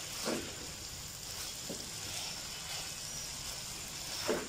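Chicken jalfrezi sizzling low in a nonstick pan as it is stirred with a silicone spatula, with a couple of short scraping strokes.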